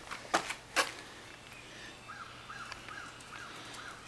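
Two short knocks, then a faint steady hum with a run of faint short chirps, about three a second, in the second half.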